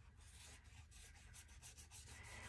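Faint, irregular brushing of a paintbrush stroking wet acrylic paint across a paper journal page; otherwise near silence.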